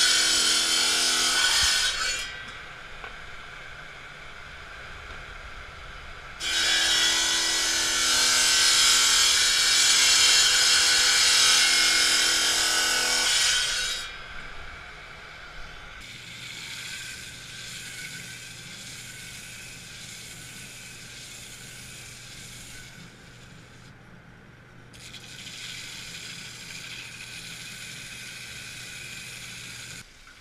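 Diamond chop saw cutting glass tubing into rings: the blade grinds loudly through the glass in two passes, one ending about two seconds in and one from about six to thirteen seconds, with the motor running quieter between them. From about sixteen seconds in, a water-fed flat lap grinding wheel runs steadily with a low hum while a glass piece is ground on it.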